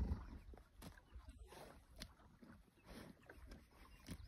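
Horse grazing close up: a few short, crisp tearing crunches about a second apart as it crops grass, over a low rumble.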